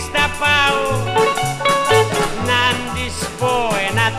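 Instrumental break of a 1959 Greek laïko band recording: a lead melody with bending, wavering notes over plucked strings and a steady, stepping bass line.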